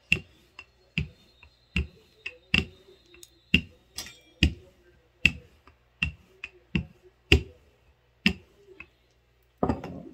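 Wooden rolling pin working a sheet of spinach pasta dough on a floured stone countertop, making sharp knocks, irregularly one or two a second, as it comes down and rolls at each stroke. Just before the end the knocks stop and there is a brief rubbing as a hand brushes flour over the dough.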